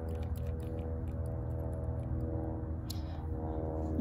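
Airplane flying over, a steady low drone with several steady humming tones, plus a few faint light clicks.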